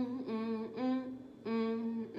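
A woman humming a slow melody a cappella with closed lips, 'mm-mm' notes in a low voice: a few short notes, a pause near the middle, then one longer held note.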